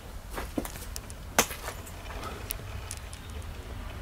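Faint scattered clicks and taps from someone moving among debris and handling things, with one sharper click about a second and a half in, over a low steady rumble.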